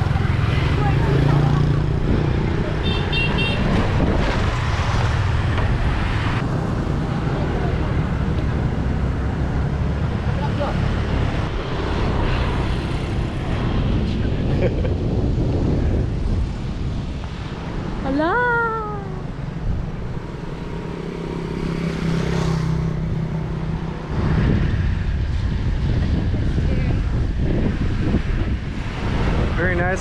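Motor scooters passing close by on a bridge lane, their small engines running and fading, over a steady rumble of wind on the microphone. A short rising tone sounds about 18 seconds in.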